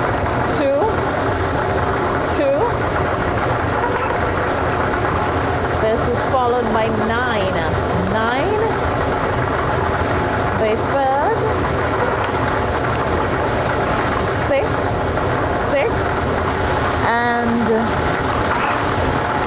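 Air-mix lottery draw machines running: a steady rushing whir of their blowers, which keep the numbered balls tossing inside the clear chambers.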